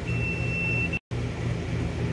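Continuity beep from a Klein Tools clamp meter: one steady high tone lasting just under a second, signalling a closed circuit through the pressure switch's normally closed contacts. A steady low hum runs underneath, and the sound cuts out for an instant about a second in.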